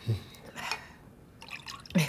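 A woman swallowing a mouthful of juice and smacking her lips, wet mouth sounds. There is a short low vocal sound at the start and a few small wet clicks near the end.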